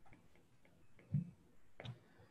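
Stylus tip tapping and clicking on an iPad's glass screen while handwriting: a series of light ticks, with two duller, louder knocks a little past the middle.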